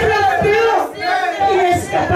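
A woman crying out loudly in fervent prayer into a microphone, in high-pitched, drawn-out cries with no recognisable words.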